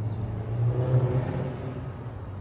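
A motor vehicle's engine humming as it passes close by, growing louder to a peak about a second in and then fading away.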